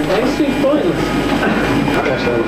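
Indistinct voices over a loud, steady background noise in an office.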